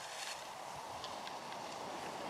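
Skis sliding over snow, a steady hiss with a few faint ticks.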